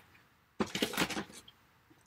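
Handling noise from a small clear plastic treat box and other craft items being picked up on a table: a brief cluster of light clicks and rustles starting about half a second in and lasting about a second.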